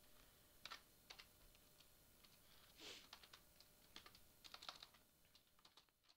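Faint, irregular clicks of typing on a computer keyboard, with one brief soft swish about halfway through, fading out near the end.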